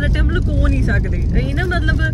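Steady low rumble of a car driving, heard inside the cabin, under a woman talking.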